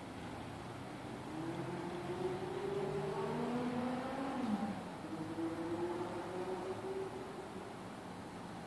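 A motor vehicle passing by: its engine tone slowly rises and grows louder, then one tone drops sharply about four and a half seconds in, and the sound fades near the end.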